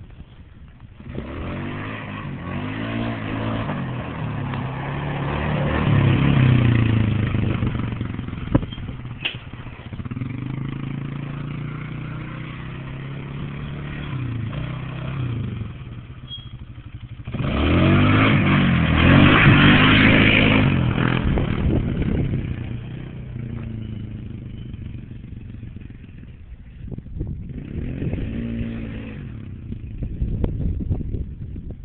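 Polaris Scrambler ATV engine revving, its pitch climbing again and again as it accelerates through the gears. It is loudest about 18 to 20 seconds in as it passes close, then fades as it rides away.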